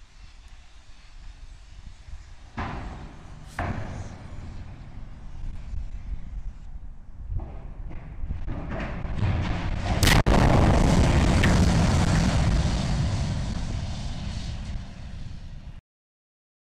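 Steel water tower toppling: two sharp cracks about two and a half and three and a half seconds in, a noise that swells as it falls, then a loud crash as it hits the ground about ten seconds in, followed by a long rumble that fades and cuts off just before the end.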